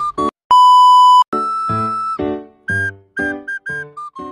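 A single loud electronic beep, one steady tone lasting under a second, about half a second in. After it, background music plays a run of short held notes.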